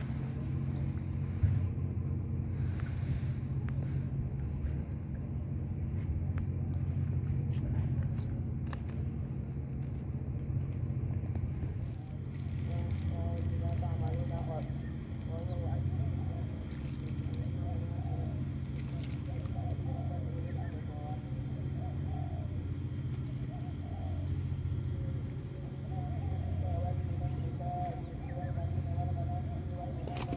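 An engine running steadily, a low droning hum that holds through the whole stretch without changing pitch.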